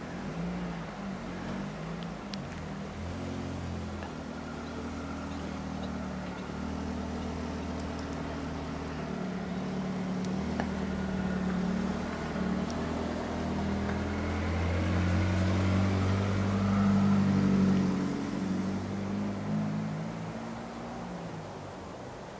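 A motor engine's low hum, slowly growing louder to a peak about three quarters of the way through, then fading away, like a vehicle passing by.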